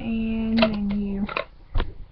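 A woman's voice holding a drawn-out hesitation sound at a steady pitch for about a second, dipping slightly at the end. This is followed by a few sharp clicks and a low knock from the plastic infuser cup being twisted and handled.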